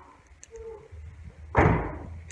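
A single short, dull thump about one and a half seconds in, amid quiet.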